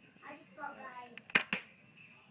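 Two sharp clicks in quick succession, about a fifth of a second apart, just after a child's short word.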